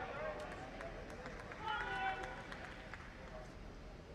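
Indistinct voices, one stretch at the start and another at about two seconds, with a few faint clicks.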